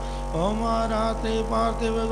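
A voice chanting a mantra of a Hindu aarti as a slow, sustained melody with gliding held notes. It enters with a rising note just after the start, over a steady low hum.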